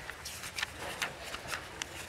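Faint paper rustling and page turning from a hymnal and loose sheets being leafed through, in a string of short, light rustles and taps.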